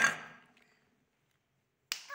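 A single sharp tap or knock at the very start, dying away within half a second, then near silence. Another short click comes just before the end.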